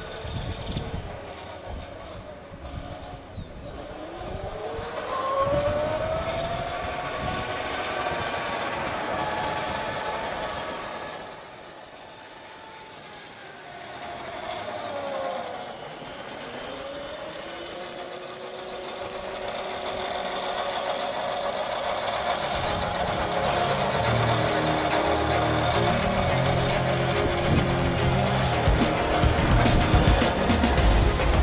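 Whine of a converted Kawasaki quad's Kunray 72-volt electric motor, rising in pitch as the quad speeds up, falling as it slows, then rising again as it pulls away. Music comes in over the last several seconds.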